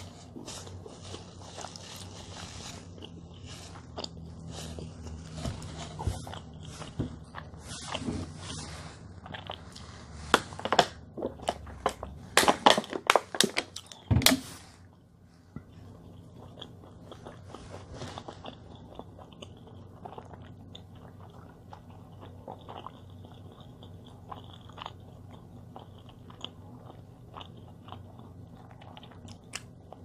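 A person eating a large meat sandwich: chewing and handling its crinkly paper wrapper. There is a flurry of sharp crackles near the middle, then only faint ticks.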